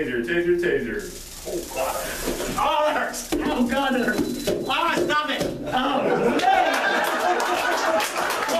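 A man crying out as he takes a taser exposure, with onlookers' voices around him. Scattered clapping starts about three-quarters of the way through.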